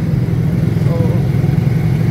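Motorcycle engine running steadily at a low, even pitch as the bike rides along in traffic, with a man's voice speaking briefly over it.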